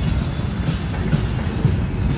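Freight train of covered steel coil cars rolling past close by: a steady rumble of wheels on the rails with a few short knocks.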